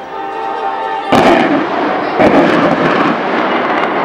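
Two loud blasts about a second apart, each trailing off in a long noisy rumble: anti-submarine weapon fire at a target, which is reported hit right after. Music plays faintly underneath.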